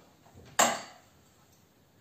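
A single sharp metallic clink about half a second in, with a brief ring after it: metal hardware being knocked or set down while fitting a motorcycle's front brake caliper.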